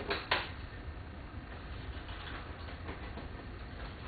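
Two sharp metallic clicks in the first half-second, then fainter clinks and taps of small metal parts handled at a car door's mirror mounting, over a low steady hum.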